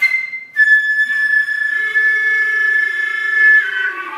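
Contemporary chamber music: a flute in its very high register attacks sharply, then holds one long, steady high note, while a lower wind tone enters underneath about halfway through and the line shifts just before the end.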